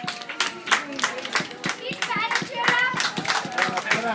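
Scattered hand clapping from a small audience, several claps a second, with voices talking over it.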